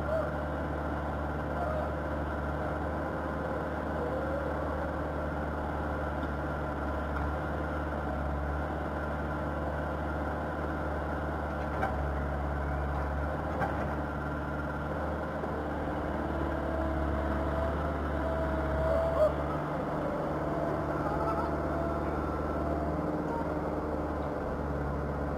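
Backhoe loader's diesel engine running steadily, with faint voices underneath.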